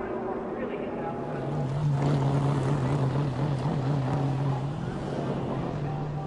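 A vehicle engine droning steadily at a low, even pitch over a noisy rumble, starting about a second and a half in and easing off near the end.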